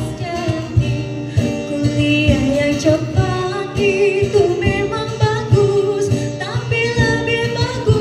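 Women singing a melody into microphones, amplified over a PA, with instrumental accompaniment and a steady low beat.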